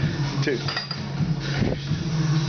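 Metal clinking of iron weight plates on a loaded barbell as the bar is lowered, with a short high ring, over a steady low hum.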